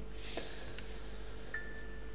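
A single computer mouse click about half a second in, over a low steady electrical hum. About one and a half seconds in a faint, steady high tone like a chime begins and holds.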